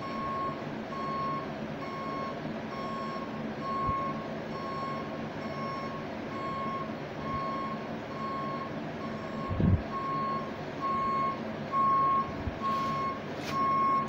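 A vehicle's reversing alarm beeping at one steady high pitch, the beeps evenly spaced and continuing without a break. A dull thump comes about ten seconds in.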